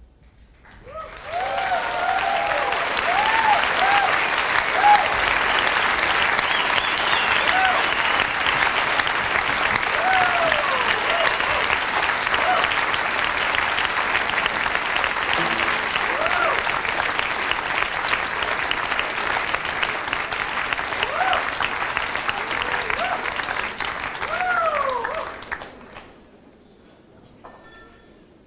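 Concert audience applauding, with scattered cheering shouts, rising in about a second in and dying away near the end.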